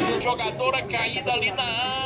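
Voices calling out, words unclear, one of them wavering and high-pitched in the second half.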